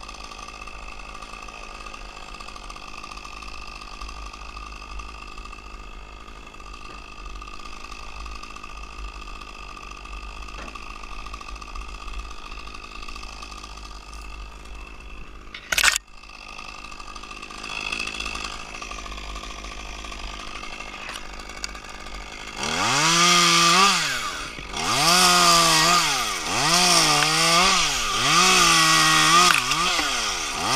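Stihl top-handle chainsaw idling steadily, with one sharp knock about halfway through. Near the end it is throttled up and cut into a spruce trunk, the pitch rising and dipping in about five surges.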